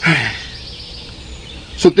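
A short vocal sound falling in pitch opens the gap. Under it runs a steady ambience bed with faint bird chirps, the kind of outdoor sound-effect bed laid under radio-drama dialogue. A man's voice starts again near the end.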